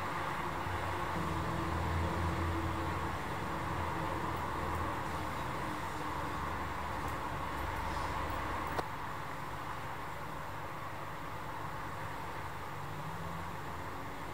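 Steady background hiss with a low hum, and a single faint click about nine seconds in.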